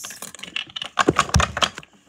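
Handling noise close to the microphone: a rapid run of short clicks and rustles, with a low thump about a second and a half in.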